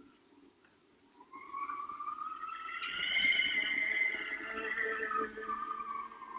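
Eerie radio-drama sound effect: a long wailing howl of several smooth tones that rises and then falls away. It is taken for wind over the moors but sounds like a voice calling a name.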